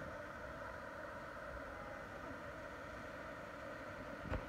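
Waterfall pouring over granite ledges: a steady, even rush of falling water.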